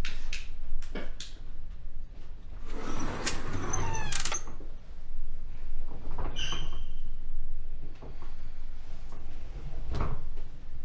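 Elevator call button pressed with a few clicks, then the elevator arriving: a loud mechanical whir about three seconds in, with squeaks falling in pitch, a short high tone a couple of seconds later, and the doors sliding open near the end.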